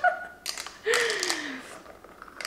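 Glass straw stirring ice in a glass mason jar, giving a quick cluster of light clinks about half a second in, over a woman's laugh that falls in pitch.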